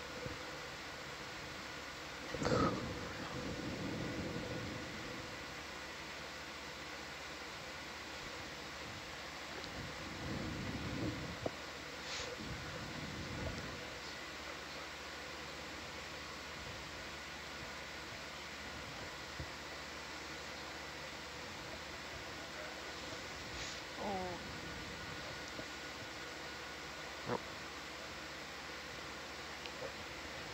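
Steady hiss and hum of control-room ventilation fans running at full speed, broken by a few brief faint knocks and a short snatch of a voice.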